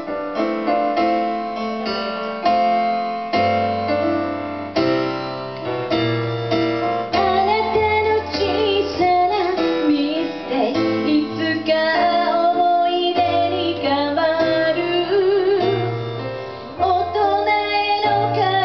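Live song performance: piano-sound chords played on an electronic stage keyboard, with a female voice joining in and singing over them from about seven seconds in.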